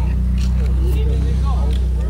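Lifted Toyota pickup's engine idling with a loud, steady low rumble, while voices talk over it.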